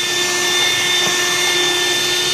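Electric hand mixer running steadily on high speed, its twin beaters whisking a thick egg-yolk and butter mixture in a plastic bowl: an even motor hum with a constant high whine.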